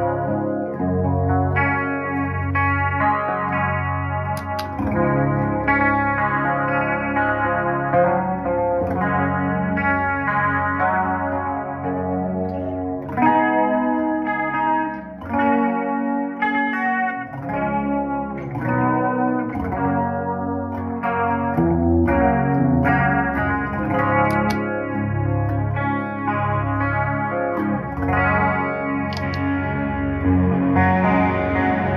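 Electric guitar played continuously through a Boss LS-2 line selector that blends the dry signal with a parallel loop of EHX Mod 11 pitch vibrato, Nobels ODR-1 overdrive and a short, slapback-style Joyo Aquarius delay, giving a chorus sound with overdrive and echo. The low notes briefly drop away about halfway through.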